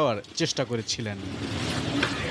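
A man's voice for a moment, then from about a second in a steady rush of outdoor street noise, with a vehicle-like sound, picked up by a phone's microphone.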